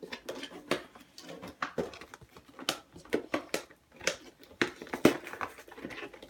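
Plastic toy packaging being pried and twisted open by hand: irregular clicks, snaps and crinkles of the plastic, with a sharper snap about five seconds in.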